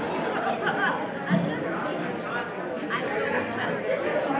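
Indistinct talking and murmuring of several people in a large hall, with no clear single voice.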